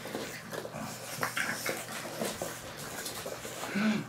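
Pug puppies snuffling and licking at close range, a scatter of short soft noises with a brief high squeak about a second and a half in.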